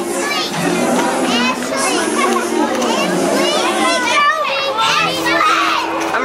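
A group of children shouting, squealing and chattering at once, many high voices overlapping.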